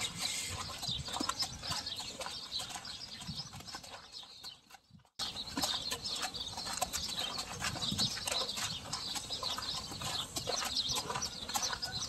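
Soft, irregular footfalls of a racehorse being led at a walk, with people walking beside it. The sound cuts out briefly about five seconds in.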